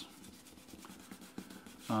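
Fine 400–600 grit sandpaper rubbed by hand over the edges and grain of a small leather patch: a faint, scratchy rubbing.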